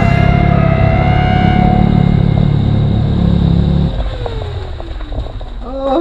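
Motorcycle engine running as the bike rolls in, then shut off about four seconds in, its note falling away as it winds down.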